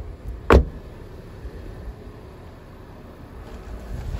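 A car's rear door is shut once about half a second in, a single sharp thud. Low rumbling handling and wind noise follows.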